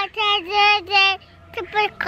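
A young child singing in a high voice, holding about four drawn-out notes in a row, then a short one near the end.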